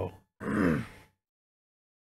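A man's wordless vocal reaction: a short grunt, then a longer groan that falls in pitch, followed by silence.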